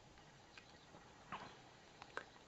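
Near silence: quiet room tone, broken by a faint click about half a second in and a short, faint squeak about a second and a third in.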